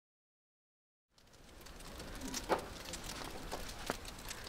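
Silent for about the first second, then faint outdoor ambience fades in: a low steady background with a few faint ticks and taps.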